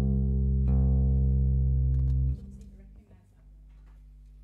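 Acoustic guitar strings ringing out during tuning, struck again less than a second in, then damped about halfway through. After that only a faint steady low electrical hum from the amplification remains.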